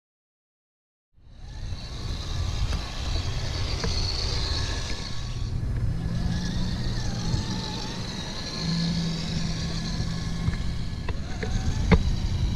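Radio-controlled electric trucks driving on packed snow: steady drivetrain and tyre noise under a low rumble, starting about a second in after silence. A low steady hum comes and goes in the second half.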